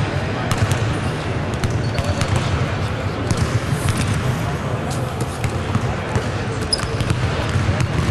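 Basketballs bouncing repeatedly on a hardwood court, several at once, with indistinct voices of players in the background.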